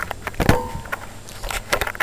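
Handling knocks on a phone held close to a puppy: one heavy bump about half a second in, then a quick run of sharp clicks and taps near the end.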